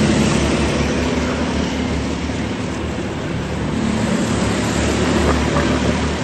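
Racing kart engines running on the circuit: a steady low engine drone under a broad rushing noise, holding level throughout.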